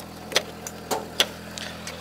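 Three sharp clicks and knocks of a car door latch and handle as the door of a Renault Twingo RS is opened from inside, the loudest just past a second in. Under them runs the steady idle of the car's 1.6-litre four-cylinder engine.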